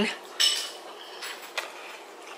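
A short clink of cutlery about half a second in as a mouthful is taken off a utensil, then a quieter stretch with one faint click past one and a half seconds.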